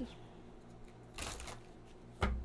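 A deck of tarot cards being handled and shuffled by hand: a soft, brief rustle of cards a little over a second in, with a few faint clicks.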